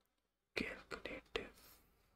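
A man whispering under his breath: a few short, breathy syllables starting about half a second in.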